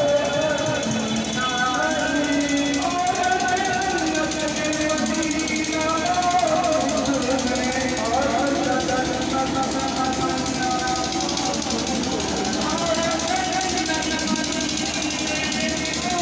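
An amplified voice singing a devotional chant through horn loudspeakers, held notes gliding up and down without a break.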